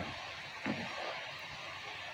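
Breaded chicken chunks deep-frying in oil with a steady sizzle, while a spatula stirs them around the pan with a couple of short knocks, one at the start and one about two-thirds of a second in.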